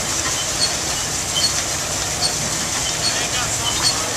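Large stationary engine with twin heavy flywheels running, beating regularly a little more than once a second, over a steady hiss of escaping steam.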